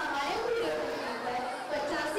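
Speech: a girl speaking her lines into a microphone.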